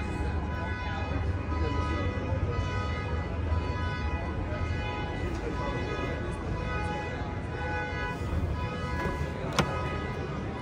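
Busy exhibition-hall ambience: a low crowd rumble and background music with long held tones. Near the end there is one sharp click as the car's driver door is unlatched and opened.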